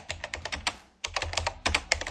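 Keyboard typing sound effect: rapid key clicks in two quick runs, with a short break about a second in.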